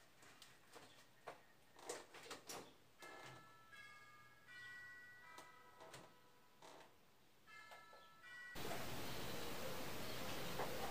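Faint clicks and taps of a laptop being worked by hand, then a short run of faint high electronic tones stepping from note to note. Near the end a louder steady hiss comes in suddenly.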